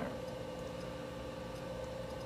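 Quiet, steady room tone with a faint constant hum and no distinct sound event.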